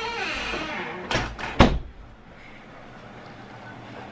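Two sharp thumps about half a second apart, a little over a second in, the second one louder, after the tail of a laugh.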